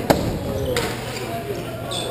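A sharp crack of a hockey stick or puck striking just after the start, the loudest sound, with a second knock about three-quarters of a second in. Players' voices and calls run underneath.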